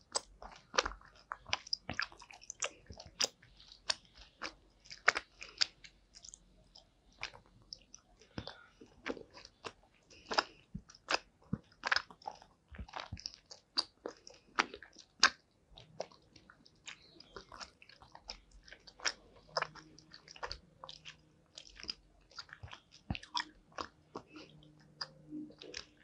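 Close-miked chewing of gummy candy: a steady stream of irregular wet, sticky mouth clicks and smacks as the soft gummies are bitten and worked between the teeth.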